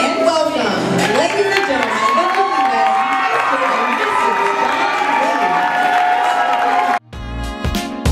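Reception crowd cheering and clapping over music with wavering, held vocal pitches. About seven seconds in it cuts off abruptly and a different background music track begins.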